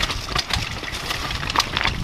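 Downhill mountain bike clattering at speed over a rough, rocky trail: a continuous low rumble of tyres on stones, broken by frequent sharp knocks and rattles from the bike.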